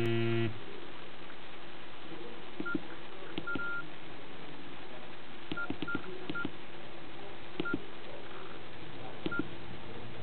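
Nokia E65 keypad being pressed: scattered key clicks, each with a short high beep key tone, one or a few presses at a time as the phone's menus are stepped through. A lower buzzy tone from the phone ends about half a second in.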